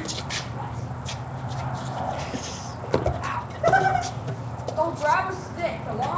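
Voices calling out and laughing, with a few sharp knocks before the voices start.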